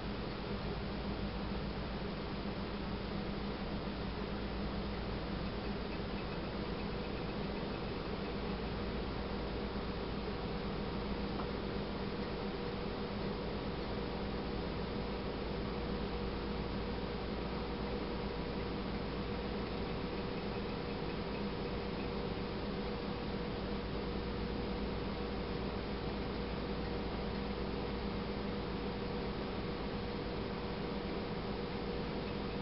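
Steady low hum with a faint hiss and no distinct events: room tone.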